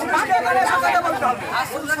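Several people talking at once: a crowd's voices overlapping in close-by chatter, no single speaker standing out.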